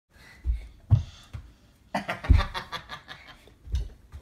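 A small child's jumping on a bench and carpeted floor: dull thumps, four in all, with a burst of laughter in the middle.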